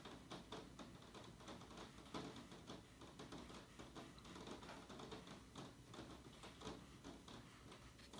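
Near silence with a faint, irregular scatter of soft ticks: a watercolour brush dabbing and stroking paint onto paper.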